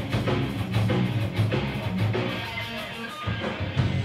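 Punk rock band playing live: distorted electric guitar, bass guitar and drum kit, with regular drum strikes, in the closing bars of a song.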